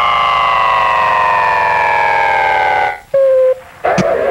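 A long, siren-like tone played from a record on the turntables, sliding slowly down in pitch for about three seconds before being cut off. A short steady lower tone follows, then a brief gap before the beat comes back in.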